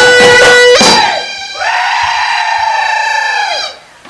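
Live Bihu music: a pepa (buffalo-horn pipe) playing a shrill reedy melody over dhol drum beats. The drums stop about a second in, and one long wavering high note is then held for about two seconds before it fades.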